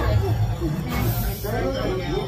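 Voices talking amid a crowd, with a short hiss, high in pitch, about a second in that lasts roughly half a second.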